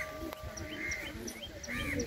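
A bird chirping repeatedly, short high chirps about three a second, over the low murmur of a crowd's voices.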